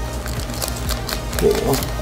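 Foil booster-pack wrapper crinkling in short rustles as the cards are drawn out, over steady background music.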